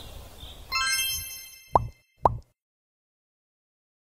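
Faint outdoor ambience with a repeating high chirp, then a bright chime rings out just under a second in and fades, followed by two quick pops about half a second apart, each dropping sharply in pitch: intro-animation sound effects.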